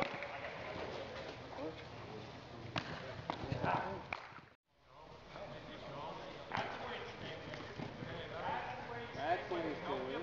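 Reverberant indoor sports-hall ambience: indistinct voices echoing around a large hall, with a few sharp knocks. The sound cuts out briefly about halfway through, at an edit.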